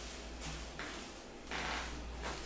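Broom bristles swishing across a closet floor in two sweeping strokes, about a second apart.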